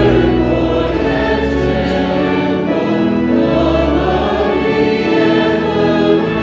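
A congregation singing a hymn together with instrumental accompaniment, in long held notes whose chords change every second or two.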